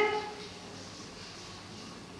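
Quiet room tone: a faint, steady hiss with no distinct sound events, after the tail of a spoken word at the very start.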